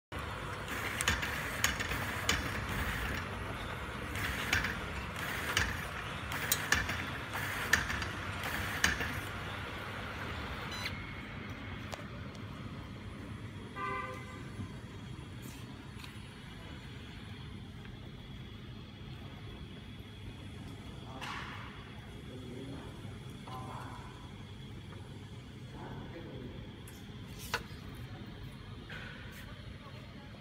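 Automatic self-adhesive labeling machine running: a steady motor and conveyor hum with sharp clicks about once a second for the first ten seconds, after which the hum drops and carries on quieter. A brief pitched tone sounds about fourteen seconds in.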